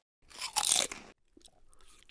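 Crunching bite sound effect: one loud crunch about half a second in, then fainter crackly chewing.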